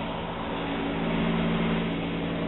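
Steady engine drone: a constant low hum under a rushing noise, with no rise or fall in pitch.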